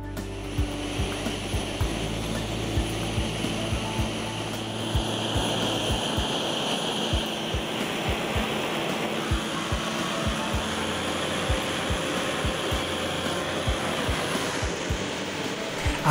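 Gas torch flame burning with a steady rushing hiss while it heats wire-wrapped steel clock parts to red heat in a firebrick hearth for hardening, with small irregular pops throughout.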